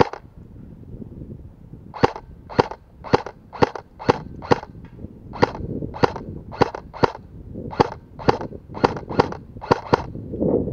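Airsoft rifle firing single shots in semi-auto: about fifteen sharp cracks at roughly two a second, starting about two seconds in.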